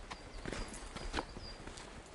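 Footsteps and trekking-pole tips knocking on a rocky mountain trail: a few sharp, irregularly spaced clicks.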